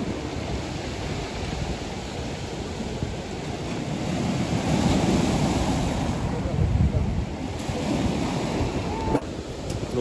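Sea waves breaking and washing onto a stony beach, the surf swelling louder about halfway through, with wind buffeting the microphone.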